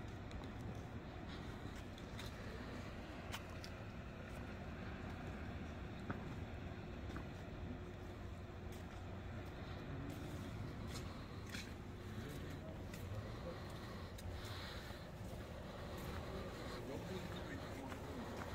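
Low, steady outdoor background rumble with faint, indistinct voices and occasional small clicks.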